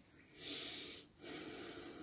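A person breathing near the microphone: a soft sniff-like breath in, then a weaker, longer breath about a second later.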